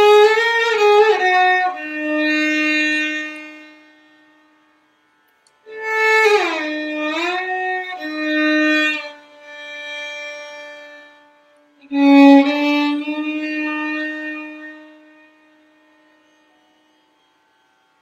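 Solo violin playing three short Hindustani raga phrases, each sliding down to a long held note with quiet gaps between. They compare the flat second degree as it is pitched in an evening raga and in a morning raga.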